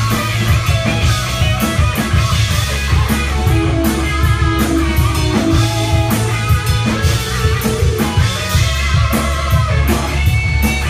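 A rock band playing live, loud and steady: electric guitars over bass guitar and a drum kit beating a regular rhythm.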